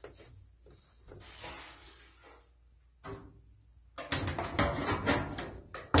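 A sheet-metal rear access panel is handled and fitted back onto a dryer cabinet. It starts with faint scraping, then from about four seconds in comes a run of knocks and rattles as the panel is pressed into place.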